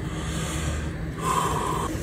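Moist squishing of smoked beef brisket as the two pulled halves are handled and stacked on a wooden board. The loudest sound is a short, brighter squish a little past halfway, over a steady low hum.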